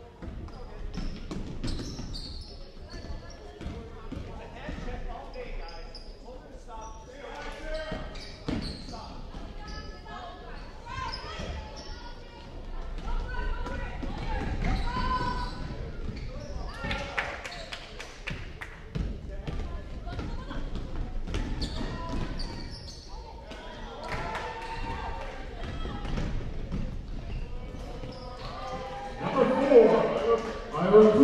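Basketball being dribbled on a hardwood gym floor, with repeated bounces, amid the voices of players and spectators in the gym.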